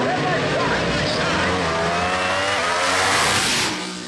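Two drag race cars launching from the starting line at full throttle, their engines climbing in pitch as they accelerate away down the track. The sound fades out near the end.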